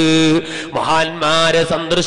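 A man chanting in long, held melodic notes: two sustained notes with a gliding change of pitch between them.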